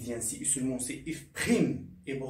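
A man's voice in several short, indistinct utterances, with the loudest about one and a half seconds in.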